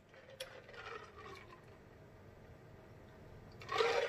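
Faint sips and swallows of a drink from a glass jar.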